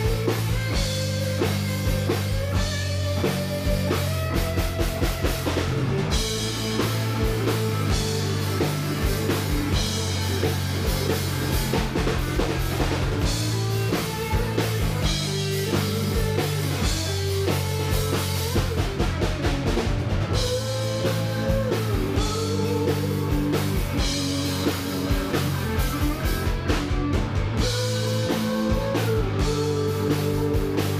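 Live rock band playing: electric guitars over a drum kit, with steady low bass notes underneath.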